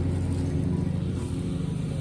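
Steady low mechanical hum of a motor or machine running, one even drone with no changes.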